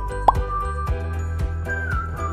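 Light background music with a steady beat, overlaid by short countdown-timer sound effects: clicks and a quick upward-sliding plop about a third of a second in.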